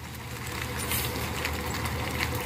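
Intercity coach's diesel engine running at low revs as the bus creeps past. It is a steady low rumble, growing slightly louder as the bus comes closer.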